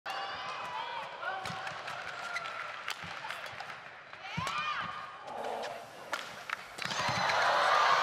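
Badminton rally: sharp racket strikes on the shuttlecock and short squeaks of court shoes on the mat. Crowd noise swells near the end as the rally builds.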